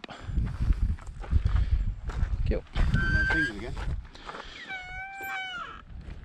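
Wooden field gate swung open, its hinge giving a squeal about a second long near the end, falling slightly in pitch, over wind rumble on the microphone.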